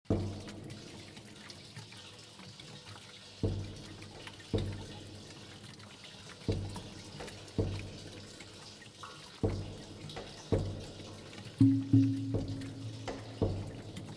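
Plastic drums (bidones) struck one at a time, each hit a hollow low thud that rings briefly, with a gap of a second or two between hits. Near the end the hits come closer together and louder, and a held low tone sounds under them.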